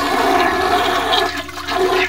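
Toilet flushing sound effect: a loud rush and swirl of water that thins out near the end, as the chain has just been pulled.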